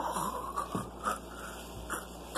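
A man making a run of short, high, whiny vocal noises of mock disgust at a strawberry yogurt cup.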